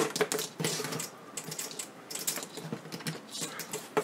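Irregular light clicks and clatter from wire leads, alligator clips and small tools being handled on a workbench.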